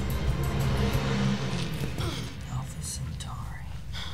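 Television episode soundtrack: a dramatic orchestral score that thins out about halfway through, then quiet voices speaking over the remaining music.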